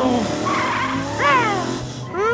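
Cartoon race-car sound effects: a car engine running with tyre skid noise. A short, rising, squeaky cry cuts in about halfway through.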